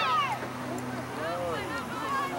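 Shouted calls from players and spectators across the field. The drawn-out voices rise and fall in pitch, loudest at the start and fainter about a second in.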